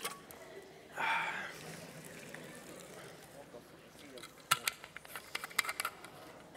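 A plastic water bottle being handled, giving a quick run of sharp crinkles and clicks near the end. A short breath comes about a second in.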